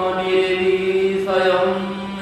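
A man's voice chanting a devotional verse, holding one long steady note.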